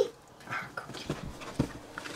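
American mink wrestling and pouncing on a plush toy on a bed: scattered soft thumps and rustles, with a couple of short faint noises about half a second in.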